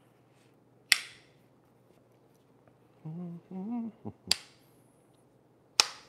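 A bicycle kickstand being handled and tried in place on the frame: three sharp snapping clicks, about a second in, at about four seconds and near the end. A short, low hum of voice comes between the first two clicks.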